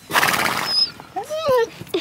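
A horse-like snort from the pet dinosaur: a loud, fluttering blow through the lips lasting under a second, a sign the animal is relaxed.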